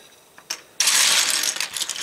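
Plastic LEGO bricks clattering as hands rummage through and spread a loose pile on a table: a single click about half a second in, then a dense clatter of many pieces from just under a second in.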